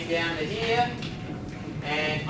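A man's voice talking in drawn-out words that the recogniser did not write down; speech only.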